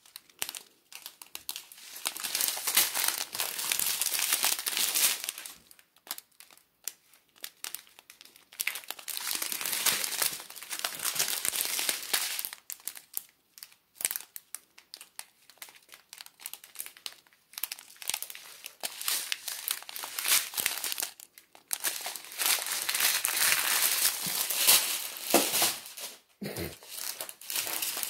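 Thin clear plastic bags of diamond-painting drills crinkling as they are handled and turned over, in several long stretches broken by short pauses.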